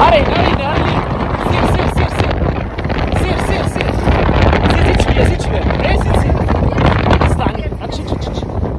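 Heavy wind buffeting the microphone over the engine of a Toyota Land Cruiser Prado crawling in four-wheel drive over a mound of sand and rock.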